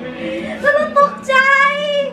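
Music with a high singing voice that holds long wavering notes in the second half.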